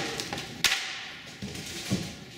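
Cardboard packing pieces being handled and pulled out of a shipping box: cardboard scraping and rubbing, with a sharp tap a little past half a second in and a duller knock near the end.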